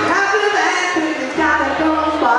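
Male lead vocal sung live over acoustic guitar in a rock song.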